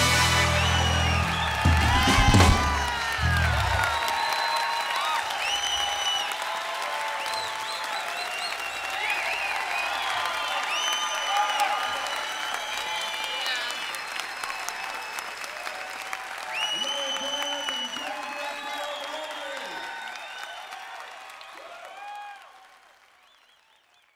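A rock band's closing chord rings out with a last flurry of drum and cymbal hits over the first few seconds. Then the audience applauds, cheers and whistles, and the sound fades out near the end.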